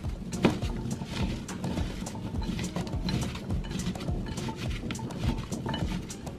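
Hands tossing cubed raw sweet potato in a ceramic casserole dish: an irregular run of light clacks and knocks as the pieces hit each other and the dish wall, with one sharper knock about half a second in.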